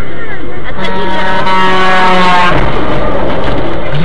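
Loud vehicle noise with voices, and a long steady pitched tone that lasts about a second and a half, falls slightly in pitch, then stops abruptly.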